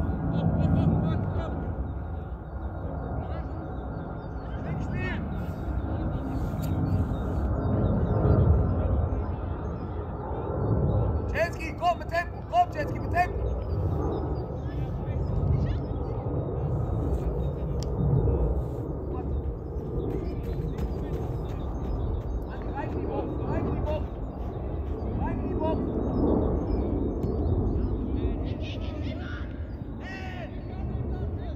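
Outdoor sideline sound of a football match: faint, distant shouts of players and spectators over a steady low rumble. A quick run of short, sharp calls comes about twelve seconds in.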